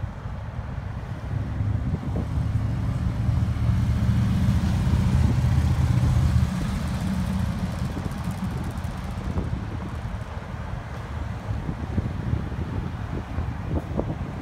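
Cars driving slowly past close by: low engine rumble and tyre noise, loudest for a few seconds starting about two seconds in, then dropping to a lower steady rumble.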